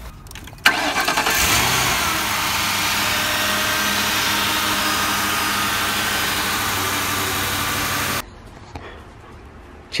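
Ford Crown Victoria Police Interceptor's 4.6-litre V8 starting up and running steadily, heard close up with the hood open, with the stuck remote-start unit disconnected. It starts suddenly less than a second in and cuts off abruptly after about eight seconds.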